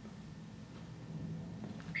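Quiet room tone with a faint low hum and no distinct events.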